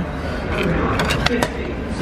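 Railway ticket vending machine printing and dispensing train tickets, with a quick run of sharp clicks about a second in, under background voices.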